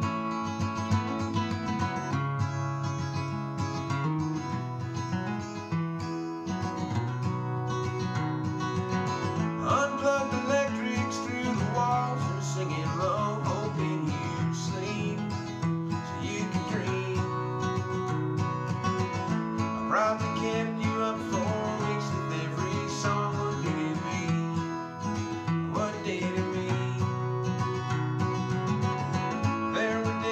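Steel-string acoustic guitar strummed in chords, with a man's singing voice coming in over it from about ten seconds in.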